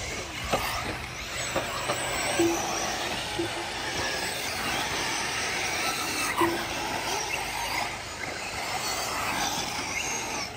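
Several 1/8-scale nitro RC truggies racing, their small glow engines buzzing and revving up and down at shifting pitch. A few short low beeps come about two and a half, three and a half and six and a half seconds in.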